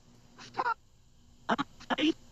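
Three short, separate sounds from the cartoon's soundtrack, with quiet between them.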